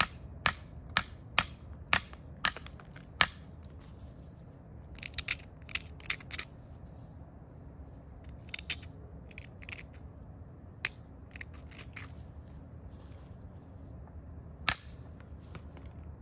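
Rhyolite biface being worked with an antler tool: a run of sharp clicks about twice a second as small pressure flakes pop off the base edge, then short scratchy strokes of a stone abrader grinding the striking platform. A single sharp click near the end marks a basal thinning (fluting) flake coming off.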